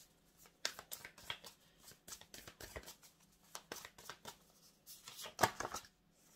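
A deck of divination cards being shuffled by hand: irregular soft slaps and riffles, with a louder flurry near the end.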